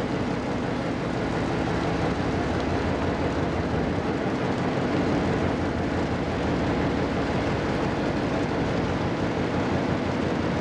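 A passenger ship's engine running steadily while under way, mixed with the rush of water along the hull.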